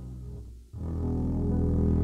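Upright double bass with the band playing low sustained notes. The sound fades almost away, then a new, louder held chord comes in just under a second in and rings on.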